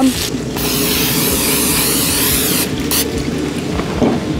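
A hiss of aerosol cooking spray lasting about two seconds, starting about half a second in, over background music.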